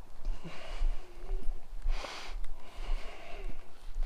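Wind rumbling unevenly on the microphone, with a man breathing out audibly a few times, once more strongly about two seconds in.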